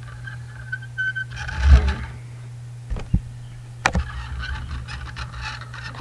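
Plastic toy car and boat trailer pushed by hand across a table top: small wheels rolling and scraping, with a few sharp knocks, over a steady low hum.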